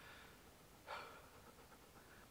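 Near silence, broken once about a second in by a short, faint breath.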